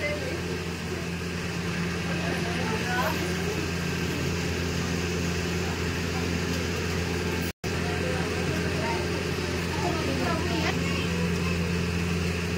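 A steady, low-pitched machine hum that holds at one level throughout, with faint voices talking in the background.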